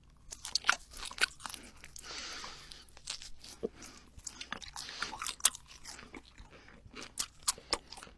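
Close-miked mouth sounds of chewing a thin slice of cured ham (jamón): wet mouth clicks and lip smacks, many sharp clicks throughout.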